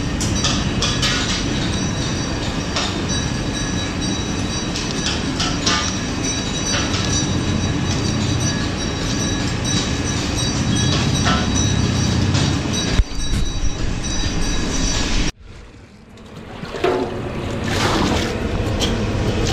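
Steady, loud rumbling background noise with scattered sharp clicks from green chillies being cut on an upright blade. About three-quarters of the way through the sound cuts off abruptly, and a rising rush builds toward the end.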